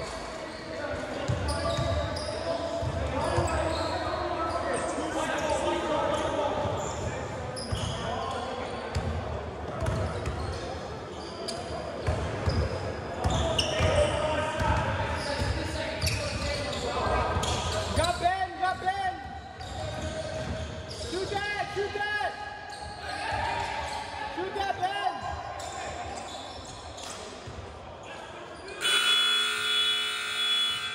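A basketball being dribbled and bouncing on a hardwood gym floor during play, with players' shouts, all echoing in a large gym.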